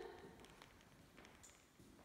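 Near silence: room tone in an empty house, with a few faint taps.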